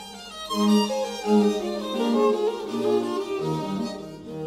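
Background music on bowed strings: a violin melody over lower strings, moving from note to note.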